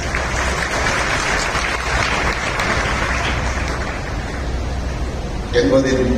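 A large crowd applauding: the clapping is strongest in the first few seconds and dies away toward the end, when an amplified man's voice takes up again.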